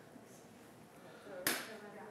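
Faint, indistinct voices in the room, with one sharp click or knock about one and a half seconds in, the loudest sound.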